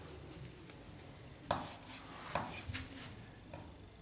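Chalk on a blackboard as a number is written: a few faint taps and short scrapes, mostly in the second half.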